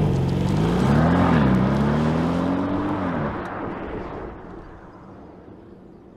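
Porsche Panamera E-Hybrid accelerating away, its engine note rising in pitch, dipping briefly about a second in, then rising again until about three seconds in. The engine and tyre noise then fade as the car draws away.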